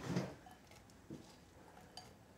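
A few soft knocks of kitchen handling in the first moments, then a quiet room with a couple of faint isolated clicks.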